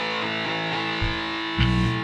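Distorted electric guitar, likely a Gretsch, striking a sustained chord that kicks off the next song abruptly after a moment of near silence, with low drum or bass hits about one second and 1.6 seconds in.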